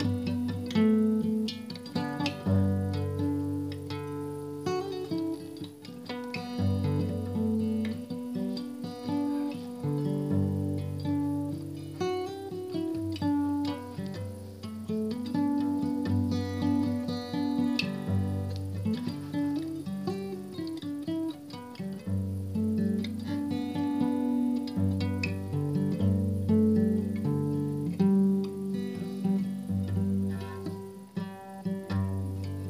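Acoustic guitar music: quick plucked notes over a low bass line that moves every second or two.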